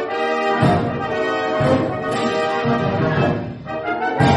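Military wind band playing live, brass and woodwinds sounding a series of held chords, recorded from the audience.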